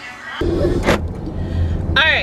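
Car engine and cabin hum heard from inside the car, a steady low drone that starts suddenly, with one sharp click about a second in.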